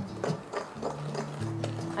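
Spoon beating creamed butter and sugar in a glass mixing bowl, knocking against the glass in quick, regular taps, over background music with sustained notes.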